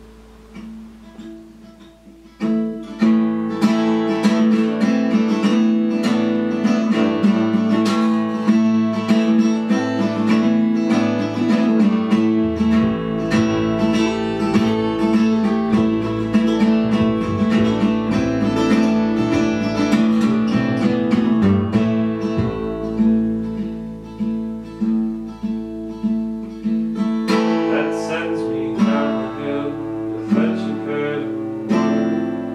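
Acoustic guitar music, played softly for the first couple of seconds, then strummed fully from about three seconds in. Near the end it thins to single ringing notes for a few seconds before the fuller strumming returns.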